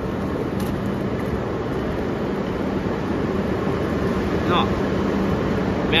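Steady train-station platform ambience: a low rumble with a constant hum under it. A short spoken word comes near the end.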